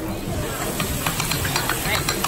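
Sauce and rice sizzling and hissing in a hot stone bowl just after sesame ginger soy sauce is poured on, with short crackles throughout.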